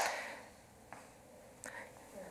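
A pause in a man's speech: his last words fade out into the room, then it is quiet except for two faint, short soft sounds.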